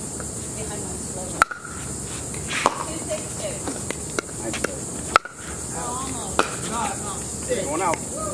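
A pickleball rally: the plastic ball pops sharply off solid paddles, one hit about every second.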